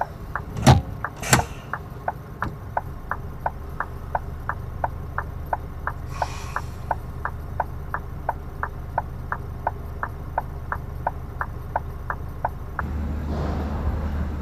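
Lorry's hazard-warning indicator relay ticking in the cab, about three clicks a second, over the diesel engine idling. Two sharp knocks come about a second in, a short hiss about six seconds in, and the engine gets louder near the end.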